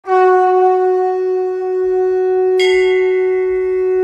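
A conch shell (shankh) blown in one long, steady held note, rich in overtones. About two-thirds of the way through, a brighter, higher layer joins the note.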